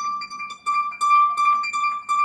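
Lyon & Healy Style 100 pedal harp played solo: a high note plucked again and again, about five times in two seconds, with other plucked notes ringing around it.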